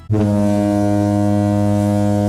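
A game-show "wrong answer" buzzer sound effect: one long, low, steady buzz.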